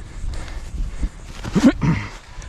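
A man's voice gives two short grunts near the end, over low rumbling wind and movement noise on the microphone.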